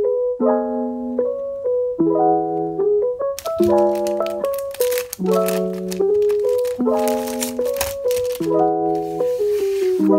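Gentle piano music playing a repeating pattern of chords and single notes. From about three seconds in, bursts of crinkling and rustling from clear plastic sheet protectors as the pages of a display file are turned.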